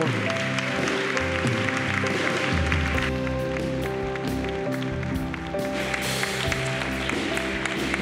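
Live band music with long, steady held notes, under the applause of a clapping crowd.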